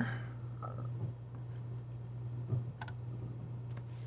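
A few faint clicks from a computer mouse, mostly in the second half, over a steady low hum.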